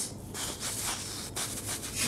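Fabric rubbing against a clip-on lapel microphone: a run of short, irregular scratchy rustles.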